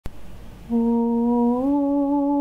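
A voice humming the first slow, long-held notes of a spiritual melody. The first note begins just under a second in and steps up a little in pitch about halfway through, after a brief click at the very start.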